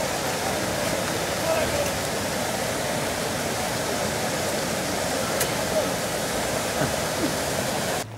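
Steady, even rushing of splashing fountain water, unbroken throughout with no gusts.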